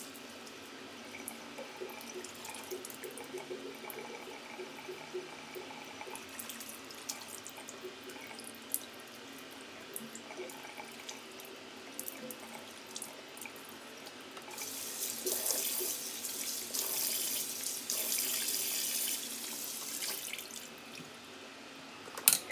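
Bathroom sink tap running in a thin stream while water is splashed onto the face with cupped hands, rinsing off a clay mask, with small splashes throughout. The water noise grows louder for a few seconds in the last third.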